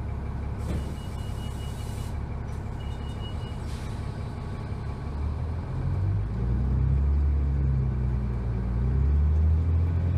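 Cummins ISC inline-six diesel engine of a 2001 New Flyer D30LF transit bus, heard from inside the passenger cabin: idling, with a short hiss of released air about a second in. About five and a half seconds in, the engine grows louder and rises in pitch as the bus pulls away from a stop.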